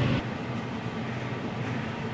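Steady low rumble with a faint hum from pots boiling on a stove.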